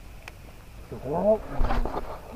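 A man's wordless vocal sound, about a second long, rising in pitch: an effort noise made while casting.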